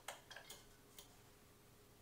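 A few faint clicks within the first second, from a desk lamp's switch being worked as its light changes to green; near silence otherwise.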